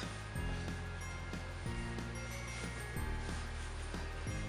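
Background instrumental music with a bass line that steps to a new note about every second.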